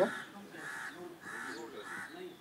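A crow cawing: four short, harsh caws about half a second apart.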